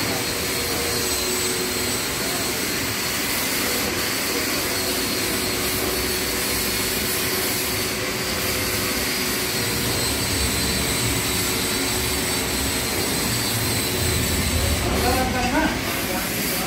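Steady mechanical drone of workshop machinery running, an even whirring noise with faint, constant high whine tones.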